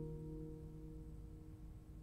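A nylon-string classical guitar chord ringing out and dying away, its lower notes lasting longest before fading almost to nothing about a second and a half in.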